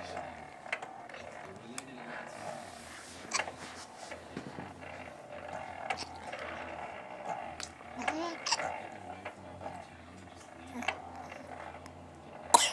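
A young infant cooing and making soft vocal sounds, in short separate coos, with a few sharp clicks in between.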